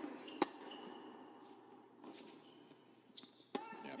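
Two sharp tennis-ball impacts, one about half a second in and one near the end, with short high squeaks of tennis shoes on the indoor hard court between them.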